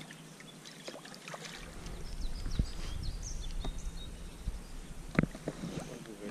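Handling noise from a small inflatable boat and fishing gear on the water: a low rumble begins about a second and a half in, with scattered small knocks and clicks, and one sharp click a little after five seconds.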